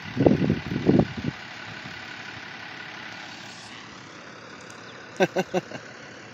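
Chevrolet pickup truck's engine running as it tries and fails to pull up out of a dirt ditch, with loud irregular bursts in the first second or so, then running steadily. A quick run of four short sharp sounds comes near the end.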